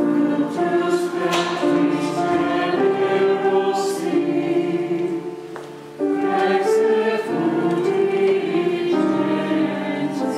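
A choir singing a slow sacred hymn in phrases, with a short pause and a new phrase starting about six seconds in.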